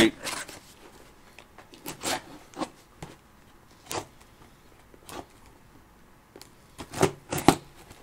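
Scissors cutting into the tape and cardboard of a shipping box: a handful of short, separate snips and scrapes spread over several seconds.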